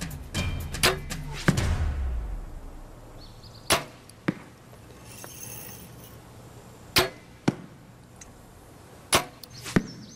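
Compound bows shot three times: each time the sharp snap of the string on release, then about half a second later the thud of the arrow striking a foam 3D target. A musical drum sting fades out in the first two seconds.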